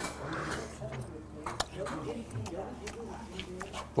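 A man chewing raw rock sea squirt, with soft wet mouth sounds and a few small clicks. Faint murmured, hum-like voice sounds run under it.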